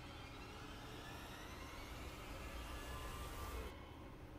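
Faint, steady vehicle-like rumble and hiss from an anime soundtrack, with a slowly rising whine. The upper hiss cuts off suddenly shortly before the end.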